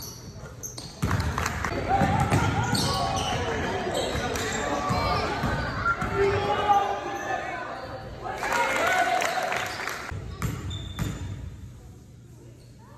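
Gym sounds during a basketball game: the ball bouncing on the hardwood floor, with players and spectators shouting, loud from about a second in and dropping off near the end, in the echo of a large hall.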